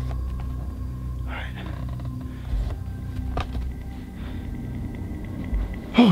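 Low, steady droning background music with a thin held tone above it, and a few faint clicks, the sharpest about three and a half seconds in.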